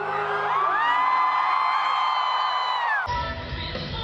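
A female singer in a live concert recording slides up into a long, very high held note that cuts off abruptly about three seconds in. A different live recording follows, with a cheering, whooping crowd.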